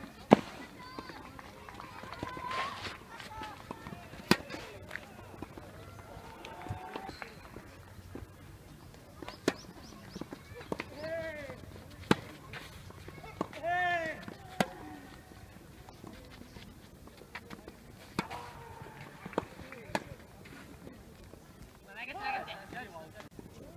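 Tennis ball struck by rackets during a rally, sharp pops every few seconds, the loudest just after the start. Short high-pitched shouts come between some of the shots.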